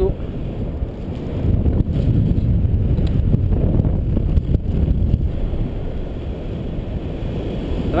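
Wind rushing over the microphone of a camera on a tandem paraglider in flight: a steady low noise that swells and eases.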